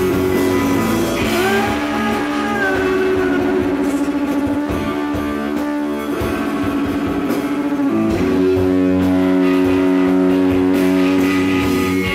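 Rock band playing live: electric guitars over bass and drums. The chords ring out fuller and a little louder about two-thirds of the way in.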